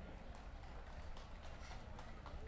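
A show-jumping horse's hoofbeats at the canter on grass, faint and irregular, over a steady low hum.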